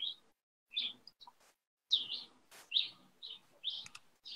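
Faint bird chirps heard over a video call: a series of short, high calls, roughly one every half second, with a single sharp click about two and a half seconds in.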